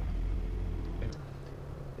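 A low rumble that eases off about a second in, leaving a faint steady low hum.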